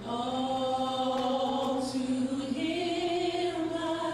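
Women's gospel vocal quartet singing in harmony, holding one long chord that steps up in pitch about halfway through and fades near the end.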